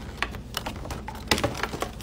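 Scattered light clicks and taps of cardboard and plastic packaging being handled as the mask's box is opened, with the sharpest pair a little past a second in.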